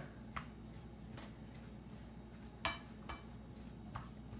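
A spoon putting mayonnaise into a mixing bowl: a few light, scattered clinks and taps of the spoon against the dish, the clearest about two-thirds of the way through.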